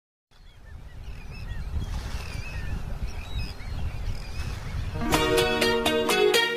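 A low rumble like surf fades in, with gulls calling several times over it. About five seconds in, a pop song starts with plucked guitar and a beat.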